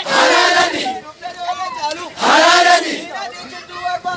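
A crowd of men chanting in unison, with loud shouted calls about two seconds apart and quieter voices between them.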